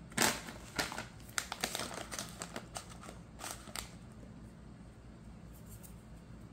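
Foil-lined plastic bag of Butterfinger baking bits crinkling in a hand as the bits are shaken out, a run of short crackles over the first four seconds, the loudest right at the start.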